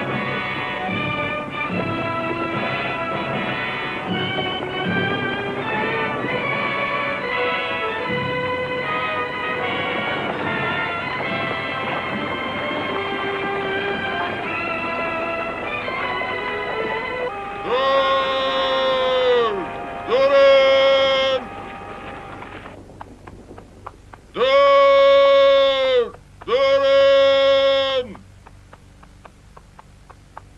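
Orchestral film score plays, then gives way about two-thirds of the way in to four long, loud calls. Each call is held for a second or two and drops in pitch at its end.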